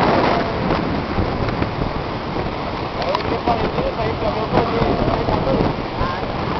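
Wind buffeting the microphone in a steady rough rush, with people talking faintly in the background.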